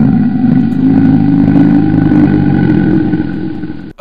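A loud, low growl sound effect, steady and rough, lasting about four seconds and cutting off suddenly at the end.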